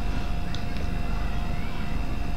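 Steady low background hum and rumble with a faint, thin steady tone above it.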